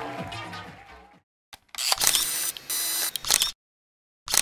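Dance music fading out, then after a short silence an electronic logo sting of about two seconds with sharp clicks and steady bright tones, cutting off sharply.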